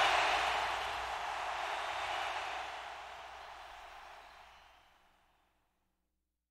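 A wash of noise fades out at the close of an electronic hip-hop track after its last beat, dying away steadily to silence over about four and a half seconds.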